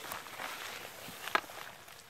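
Footsteps rustling through grass, with one sharp knock a little past halfway.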